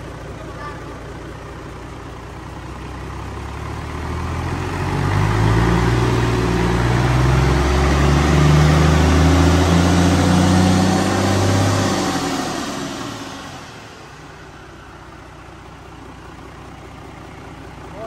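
Isuzu 6WF1 inline-six diesel engine on a test stand, idling, then revved up about four seconds in and held at high speed for about seven seconds before dropping back to a steady idle.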